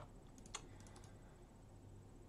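Near silence with room tone, broken by a click about half a second in, with a few fainter ticks just before it: a computer mouse button being clicked.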